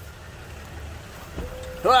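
Low steady background rumble, then about one and a half seconds in a steady electric whine starts and holds at one pitch: the truck's electric hydraulic pump running the cylinder that pushes a two-foot steel soil probe into the ground.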